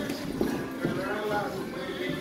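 Boxing sparring: a few short thuds of gloved punches and quick footwork on the ring canvas, over background music.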